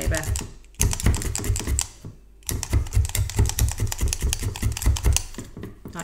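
A felting needle stabbing repeatedly into wool on a bristle brush felting mat, with fast, even taps several times a second. It comes in two runs, with a short pause about two seconds in.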